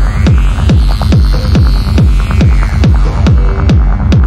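Peak-time driving techno with a steady four-on-the-floor kick drum, about two kicks a second, over a droning low bass. A filtered sweep rises and then falls in the upper range through the middle.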